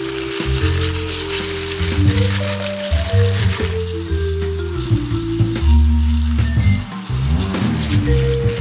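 Background music with held low notes that change every second or so. Under it, wet squishing and a crinkly crackle from a plastic-gloved hand rubbing char siu sauce into raw pork in a metal bowl.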